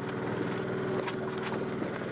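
A steady low drone of several held tones, with a few faint clicks.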